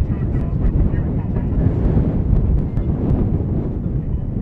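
Wind buffeting the microphone: a loud, uneven low rumble that swells and dips, with faint voices in the background.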